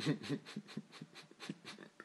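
A man laughing in short breathy gasps, about six pulses a second, loudest at the start and trailing off.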